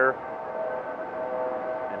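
A steady mechanical hum made of several held tones, unchanging throughout, with the tail of a spoken word at the very start.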